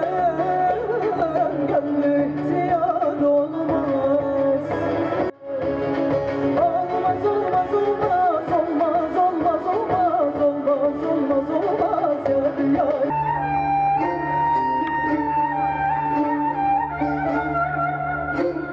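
A woman singing a Turkish folk song with heavy vocal ornaments, accompanied by a saz and guitar ensemble. About thirteen seconds in, the sound cuts abruptly to a different piece of music with long held notes.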